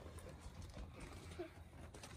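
Quiet background with a faint, steady low rumble between bursts of talk, and a brief faint voice fragment about one and a half seconds in.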